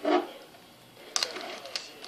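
Plastic wrestling action figures clicking and knocking against each other and the toy ring as they are moved by hand: a few light knocks starting about a second in.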